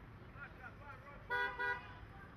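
A vehicle horn sounding two short toots in quick succession, about a second and a half in, over faint distant voices.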